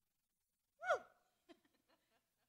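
Near silence, broken about a second in by one short vocal sound from a person, a soft exclamation or sigh that falls in pitch, followed by a few faint ticks.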